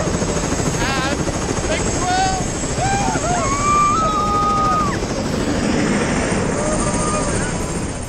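Turbine helicopter running on its pad, a steady loud rotor and engine noise with a thin high whine. People whoop and laugh over it.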